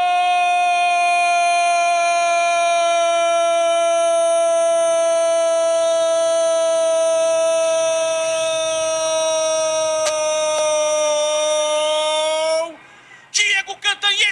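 Brazilian football commentator's drawn-out goal cry, one "Gooool" held on a single high, steady note for about thirteen seconds, sagging slightly in pitch before it breaks off; rapid speech follows near the end.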